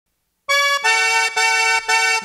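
Solo accordion opening the song after a half second of silence, playing a short phrase of four held notes, each about half a second long.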